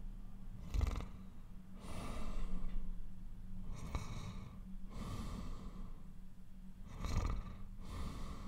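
A man breathing slowly and heavily while dozing back off to sleep, with about five deep breaths in and out spaced a second or two apart.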